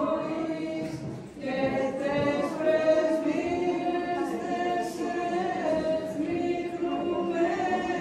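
Unaccompanied choir chanting an Orthodox Byzantine hymn in Greek, with a brief break between phrases just over a second in.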